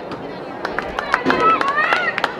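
Young female voices calling and shouting on an outdoor field hockey pitch, with a string of short sharp clacks in the second half.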